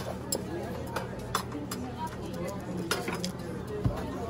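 Busy breakfast-room ambience: indistinct chatter with scattered clinks of dishes and cutlery over a steady low hum.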